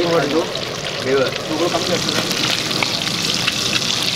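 Fish steaks frying in a wok of hot oil: a steady sizzle with fine crackling.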